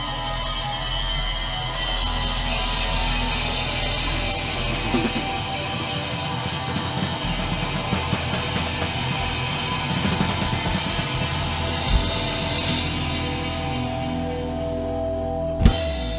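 Live rock band playing, with electric guitar, bass and drum kit, and cymbal crashes. The song closes on a sharp final hit just before the end, and the sound then drops away.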